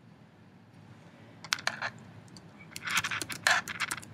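Typing on a computer keyboard: a few keystrokes about a second and a half in, then a quick run of keystrokes near the end.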